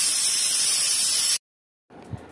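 Pressure cooker whistle: steam venting through the weight valve of a Nutan pressure cooker as a loud, steady hiss, the release that marks the cooker at full pressure. It cuts off abruptly about one and a half seconds in.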